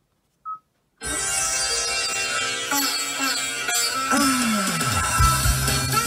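A car radio's touchscreen gives one short beep after a second of near silence, then music starts playing through the car's stereo about a second in, with a low falling slide in the middle.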